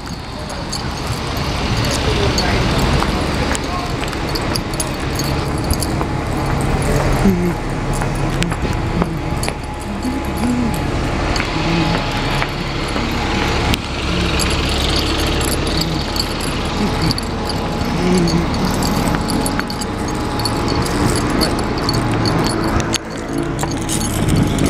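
Street traffic with bus engines running and passing close by, mixed with indistinct voices; a laugh comes about three-quarters of the way through.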